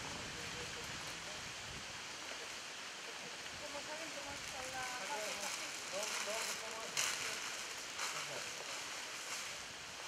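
Steady outdoor hiss with faint, indistinct voices of people talking at a distance, a little clearer in the middle, and a single short knock about seven seconds in.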